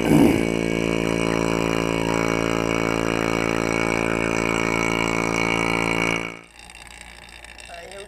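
Electric rotary vacuum pump running with a steady hum as it draws the air out of a bell jar over a beaker of water; it cuts off suddenly about six seconds in.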